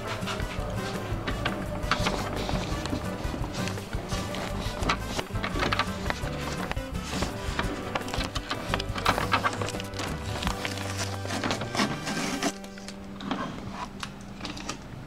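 Background music with a steady beat of percussive hits under sustained notes, the texture thinning to a held tone near the end.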